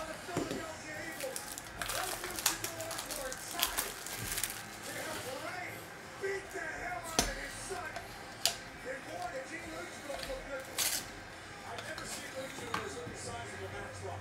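Paper trading-card pack wrapper being handled and torn open, with crinkling and several sharp clicks and crackles scattered through, then a clear plastic card holder being handled.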